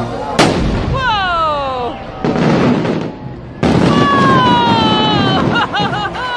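A firework going off: one sharp bang about half a second in, followed by loud crackling noise and long, slowly falling high-pitched tones.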